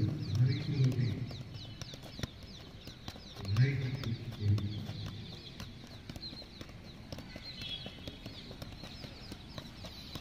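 Many small birds chirping throughout, with scattered soft taps of footballs being juggled on the feet and knees. A low voice sounds briefly near the start and again around the middle.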